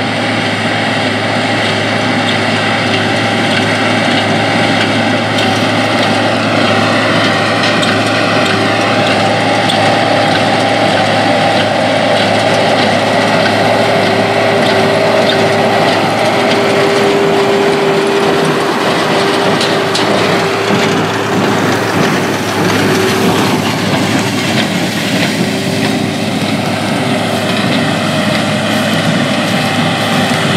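AGCO RT120 tractor running steadily under load, driving a New Holland 570 small square baler through its PTO as the baler picks up and bales wheat straw; the engine and baler machinery run together without a break.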